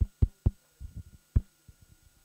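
A quick series of dull thumps and knocks picked up by a conference-table microphone being handled. The loudest knocks fall in the first second and a half, with smaller ones after, over a faint steady hum from the sound system.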